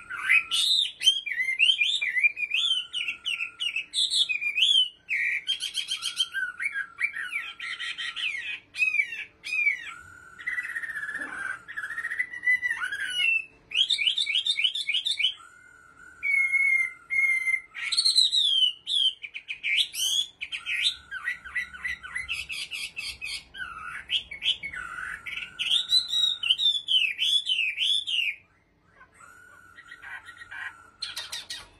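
Caged Chinese hwamei (họa mi) singing a long, varied song of loud whistled phrases and fast repeated trill-like notes, with only brief gaps and one short pause near the end.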